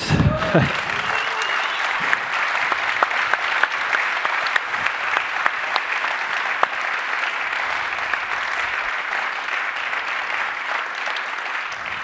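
Audience in a large hall applauding, steady clapping that eases off slightly near the end, with a short laugh just after the start.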